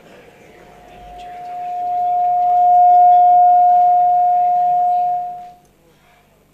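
Public-address feedback: a single pure whistling tone that swells up over about two seconds, holds loud and steady, then cuts off sharply about five and a half seconds in.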